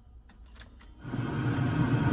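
Factory AM/FM stereo of a 1981 Datsun 280ZX Turbo seeking between FM stations: muted at first with a few faint clicks of the tuning buttons, then about a second in the hiss of a weakly received station comes up and holds.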